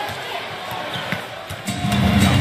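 A basketball being dribbled on a hardwood court, with arena crowd noise and arena music behind it.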